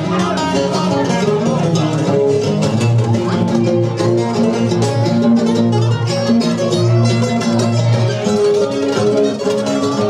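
Live music from two acoustic guitars, strummed and picked in a steady rhythm, with a low note held through the middle.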